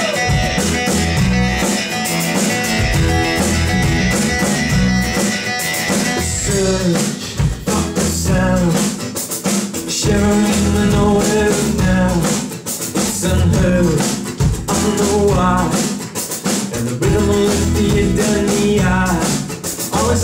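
Live band playing a song's instrumental introduction: strummed acoustic guitar over a steady drum beat.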